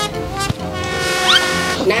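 A horn-like sound effect: a sharp click about half a second in, then a sustained tone made of many pitches at once, with short rising slides in the middle, cutting off just before the end.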